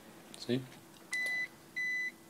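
Two short, identical electronic beeps of one steady high tone, a little over half a second apart, starting about a second in.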